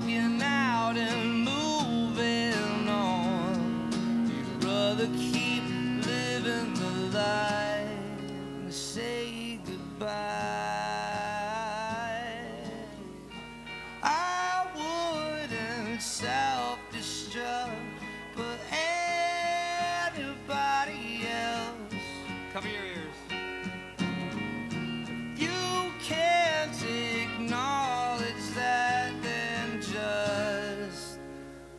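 Live acoustic-duo indie rock: a strummed acoustic guitar and an electric guitar playing together, with a male lead vocal over them.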